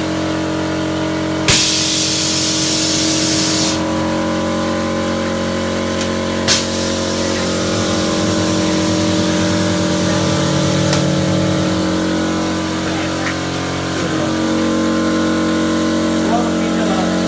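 Semi-automatic thermocol plate making machine running with a steady, loud hum. About a second and a half in, a sharp click is followed by a hiss lasting about two seconds. Another sharp clack comes about six and a half seconds in.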